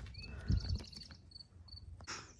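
Quiet woodland ambience: short high chirps repeating irregularly, with a couple of soft low thumps about half a second in.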